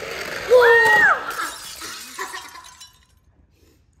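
Plastic toy cars rattling and clattering as they race across a wooden tabletop, dying away after a couple of seconds. A loud, high shout rises over the clatter about half a second in.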